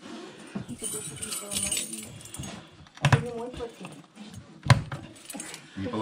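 A bunch of metal keys jangling as it is passed from hand to hand, with a couple of sharp clicks, the louder one just before the last second.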